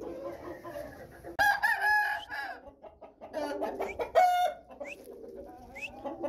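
Aseel rooster crowing once, about a second and a half in, a call of just over a second. Softer clucks follow, then a short, loud call about four seconds in.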